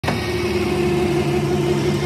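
Heavy diesel engine running at a steady speed, a constant low hum that starts as the sound begins.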